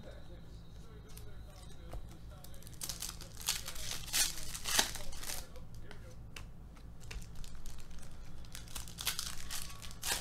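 Foil trading-card pack wrappers crinkling and tearing as packs are torn open and handled by hand, in irregular bursts that are thickest a few seconds in and again near the end.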